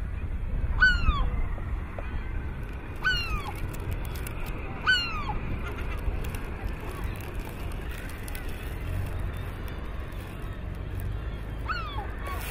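Bird calls at a seabird colony: three short calls in the first five seconds and one more near the end, each rising quickly and then falling in pitch, over a steady low rumble.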